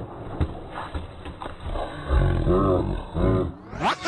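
A man crying out twice, loud and wordless, as he tumbles off a skateboard onto the asphalt. Before that, a few short knocks of the board hitting the pavement.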